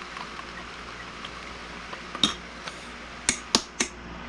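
A stirring utensil clinking against a glass measuring cup of liquid plastisol: one tap a little over two seconds in, then three quick taps near the end.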